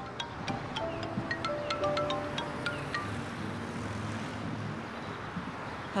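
Mobile phone ringtone: a short chiming melody repeated several times, stopping about three seconds in, before the call is answered.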